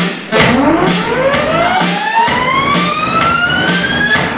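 Dance music playing for a stage routine: a siren-like synth sweep rises steadily in pitch from about half a second in, over a steady beat of about two strokes a second.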